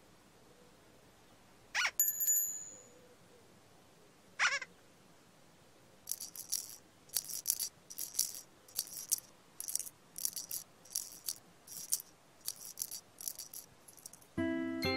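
Children's TV soundtrack effects: a quick rising swoop with a brief high chime, a second swoop, then a shaker rattled in a steady rhythm of about two shakes a second.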